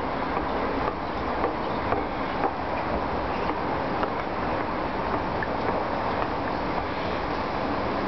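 Escalator running: a steady noisy drone with faint clicks now and then.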